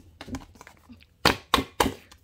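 Three sharp smacks in quick succession, a little over a second in: a hand and a cardboard trading card striking the tabletop.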